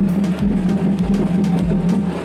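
Procession drums beating steadily, with a continuous low humming tone under the beat.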